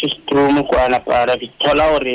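Speech only: a man talking on a radio broadcast.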